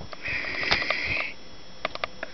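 A person sniffing: one breath drawn in through the nose, lasting about a second.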